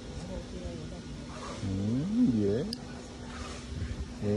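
A man's voice in a drawn-out, wordless exclamation that rises and falls in pitch, about halfway through, over a faint steady hum.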